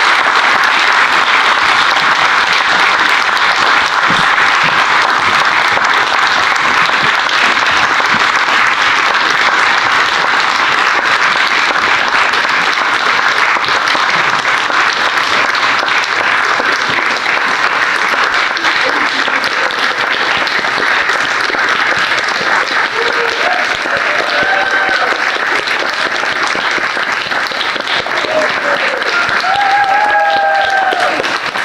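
Theatre audience applauding steadily and loudly for the cast's bows, with a few voices rising over the clapping in the last ten seconds.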